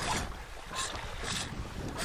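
Wind buffeting the microphone over choppy lake water slapping at a boat's hull.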